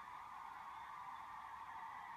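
Faint steady hiss of background room tone, with no other sound.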